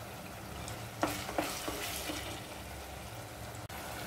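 A wooden spatula stirs chopped tomatoes into frying onions in a clay pot, with a few scraping strokes about a second in, over a low steady frying sizzle.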